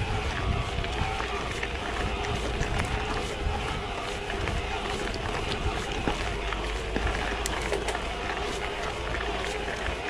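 Mountain bike riding over a dirt and gravel trail: steady tyre and drivetrain noise with scattered small clicks and rattles from stones, over a faint steady whine.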